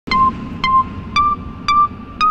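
Instrumental intro of a hip-hop track: a synthesizer plays short ping-like notes about twice a second, two on one pitch and then two a little higher.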